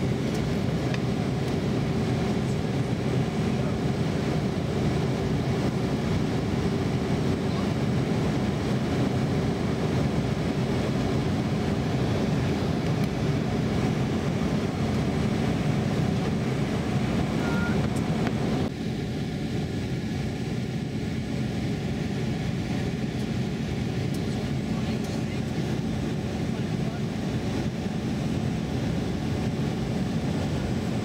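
Jet airliner cabin noise heard beside the wing engine during descent: a steady rush of engine and airflow with a low hum. About two-thirds of the way through, the sound drops suddenly to a slightly quieter, duller rush and stays there.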